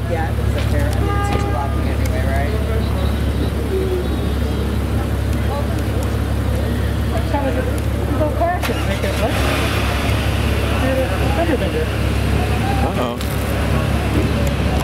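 A steady low hum of a car engine idling close by, over street traffic, with low voices talking.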